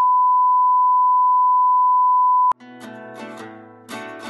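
Loud, steady 1 kHz test tone, the beep that goes with TV colour bars, cutting off abruptly about two and a half seconds in. Quieter instrumental music starts right after.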